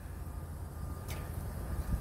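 Low, steady rumble of a semi-truck's diesel engine idling.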